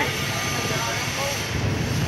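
Steady city street traffic noise, a continuous low rumble of passing vehicles.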